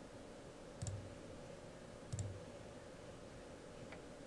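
Two single computer-mouse button clicks about a second and a half apart, with a fainter click near the end.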